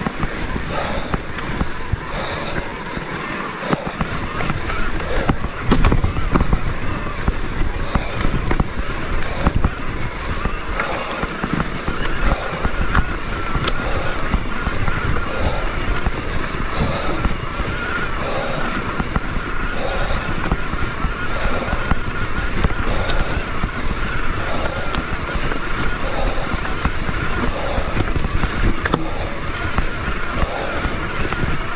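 An electric mountain bike climbing a rough dirt trail: a constant rumble and jolting from the tyres and frame over stones and ruts, and from about halfway through a steady high whine from the mid-drive motor under assist.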